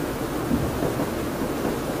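Steady room noise in a small room: a low rumble with a faint hiss, no distinct events.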